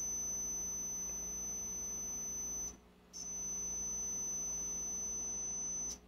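A digital multimeter's continuity beeper sounding one steady high-pitched tone. It cuts out for about half a second a little before halfway, then sounds again until just before the end. The probes are across the electrolysis cell's positive and negative terminals, so the beep shows a short between the plates.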